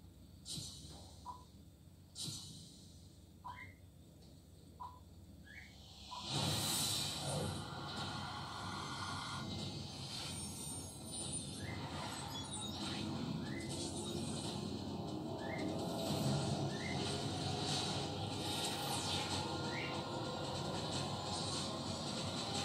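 Soundtrack of a cinema countdown clip heard from a TV's speakers. A few faint ticks and short rising chirps come first. About six seconds in, a dense music and effects bed comes in suddenly, with short rising blips repeating about once a second.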